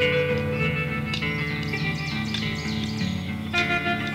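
Instrumental background music: plucked notes ringing out over held low notes.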